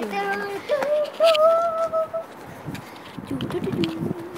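Children's voices holding long, steady notes that step from one pitch to another, like singing or hooting, for about the first two seconds, then rougher voice sounds near the end.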